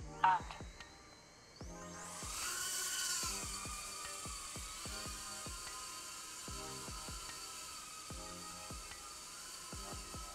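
Tinyhawk 3 1S tiny whoop's brushless motors and small propellers spinning up about two seconds in: a high whine that rises in pitch as the drone lifts off, then settles into a steady high-pitched whir as it hovers and flies. Faint background music with a beat runs underneath.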